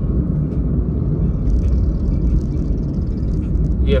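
Steady low rumble of engine and road noise inside a car's cabin while it drives in city traffic.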